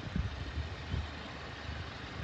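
A steady low engine hum like a car idling, with a few soft thumps about a second apart.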